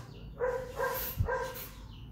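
A dog barking faintly: three short barks within about a second.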